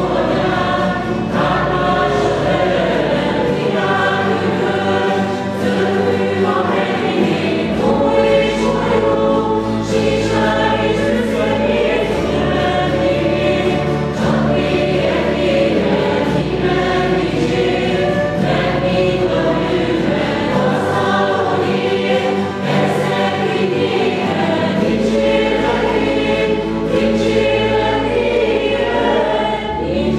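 A small church music group singing a hymn together, women's and a man's voices, accompanied by acoustic guitars and a cello.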